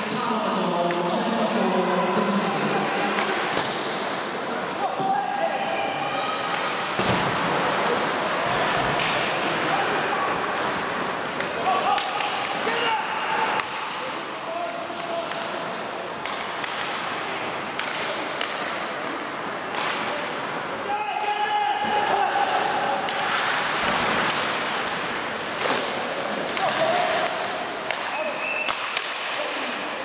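Ice hockey play on a rink: repeated sharp knocks of sticks, puck and boards at irregular intervals over the scrape and hiss of skates, with players' and spectators' shouts now and then.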